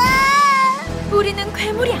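Children's song backing music. Over it, a high, drawn-out cartoon voice cry lasts just under a second, then a cartoon fish voice speaks a short line.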